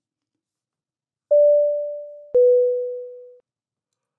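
Two-note electronic chime, a 'ding-dong': a higher note sounds about a second in and fades, then a slightly lower note follows a second later and fades away.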